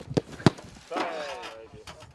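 Two sharp thuds of a football a quarter-second apart from a shot at goal, the second the louder. About a second in comes a short shout that falls in pitch.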